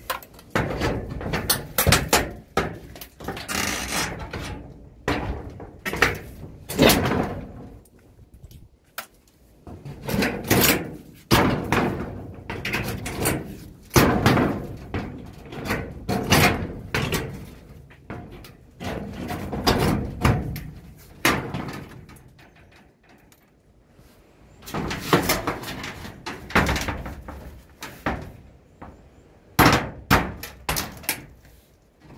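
Hooked crowbar prying and knocking at a nailed-on corrugated sheet, making irregular bangs and rattles of the sheet in clusters, with a couple of short pauses.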